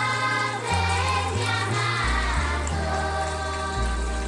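Music: a choir singing over held bass notes that change every second or so.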